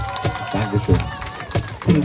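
People's voices talking, not clearly as words, with a few sharp knocks scattered through.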